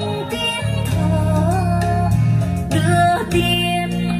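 A song with a singing voice over a steady bass line, played back through a pair of 12-inch full-range karaoke speakers driven by the karaoke amplifier system.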